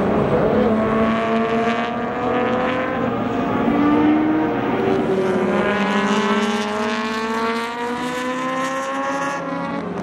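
BMW 3.0 CSL (E9) race cars' straight-six engines under hard acceleration as they pass one after another. The engine note climbs steadily through the second half and drops sharply near the end at an upshift.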